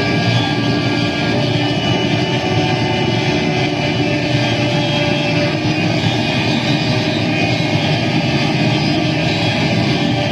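Experimental saxophone drone run through effects pedals: a loud, unbroken, distorted wall of sound with several held tones.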